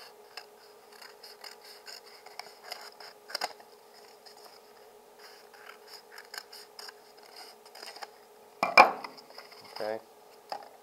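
Scissors cutting through a flattened cardboard toilet paper tube, with small crisp snips and rustling of the card, and a louder knock near the end.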